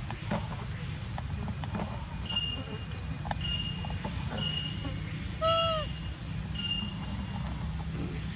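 A baby macaque gives one short, clear coo about five and a half seconds in; it is the loudest sound here. Behind it are a steady high insect drone and a short high peep repeated several times.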